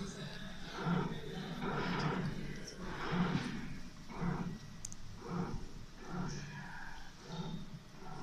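Indistinct background talking, in Chinese, in irregular short phrases.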